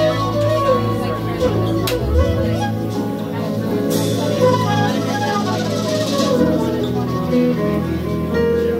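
Live band music: a flute plays a gliding melodic solo into a stage microphone over the band's backing, with electric bass and drums.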